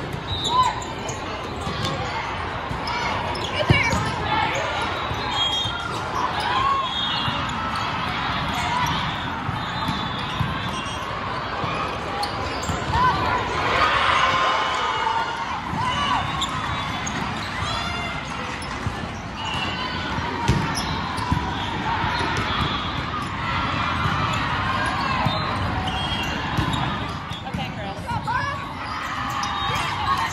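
Indoor volleyball play echoing in a large hall: balls being struck and bouncing, short shoe squeaks on the court, and the chatter and calls of players and spectators throughout.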